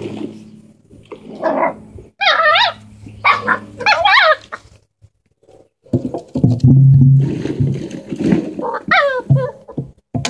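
Dalmatian puppies at play giving short, high, wavering yelps and squeals, then low growling for a second or two after a brief pause in the middle.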